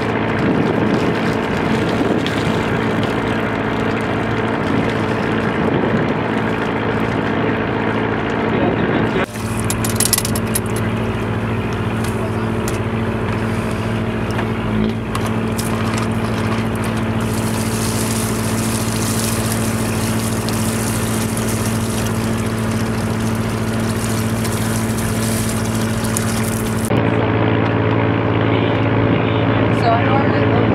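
A boat's engine running steadily with a low hum, under the hiss and splash of a garden hose spraying water onto a plankton net and into a bucket. The water noise changes abruptly about nine seconds in, is loudest in the second half, and shifts again near the end.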